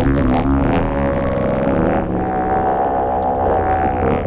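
Electronic drone from a modular synthesizer: samples from a Buchla system run through a Synton Fenix II phaser that is being modulated and fed back. The result is a dense, buzzing drone with shifting overtones over a steady low bass. About halfway through, the upper texture thins and a single high tone holds steady.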